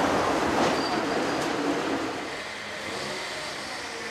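A vehicle passing close by on the street, a rushing noise that fades away after about two seconds.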